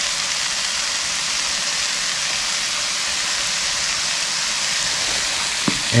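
Small pieces of eye of round steak sizzling in olive oil in a copper frying pan on a butane camp stove: a steady, even frying hiss.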